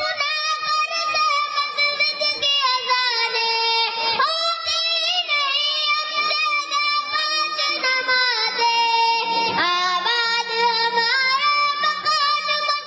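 A child singing a naat, an Urdu devotional song, solo and unaccompanied, with long held notes that glide and waver between phrases.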